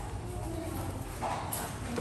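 Stiff laminated flashcards being handled and swapped, with a papery rustle and a light clack about one and a half seconds in, over a low room hum.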